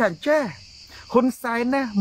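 A steady, high-pitched insect chorus runs continuously under a man's speech.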